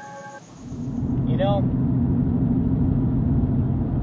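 Steady road and engine noise inside a moving Ford truck's cab, rising in about half a second in and then holding as a low rumble. A few held tones stop just before it comes in.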